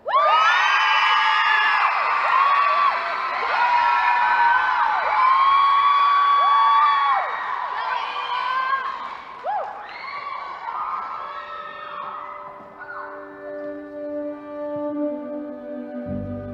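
Audience cheering and shrieking, with many high whoops rising and falling over one another, starting abruptly and dying down after about ten seconds. Near the end, music begins with held notes.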